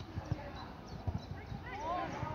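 Voices calling out during a football match, with a rising shout near the end, over a scattered run of dull low thumps.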